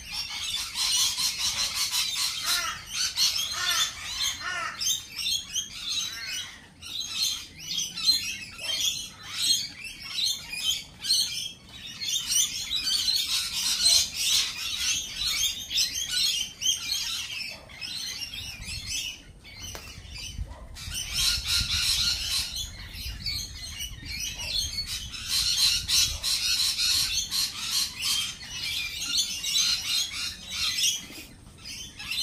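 A group of lorikeets chattering and calling in a dense, rapid stream of high-pitched squawks, coming in busy bouts with a few short lulls.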